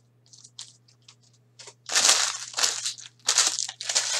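Foil trading-card pack wrapper being torn open and crinkled: a few faint clicks of handling, then loud crinkling in several bursts starting about two seconds in.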